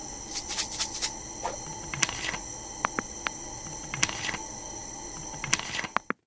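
Irregular light clicks and taps as fingers handle small polymer clay miniatures on a tabletop, over a steady faint background hiss.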